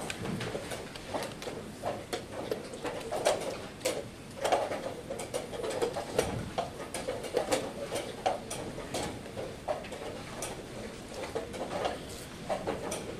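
Many short, sharp clicks and knocks at irregular intervals: wooden chess pieces being set down and chess clock buttons being pressed on the boards around a tournament hall as play begins.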